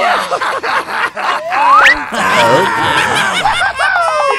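Cartoon character voices snickering and chuckling over a busy mix of short sound effects, with a rising whistle-like glide about one and a half seconds in.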